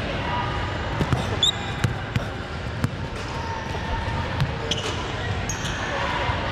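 A basketball bouncing irregularly on a hardwood gym floor, with one short high squeak about a second and a half in.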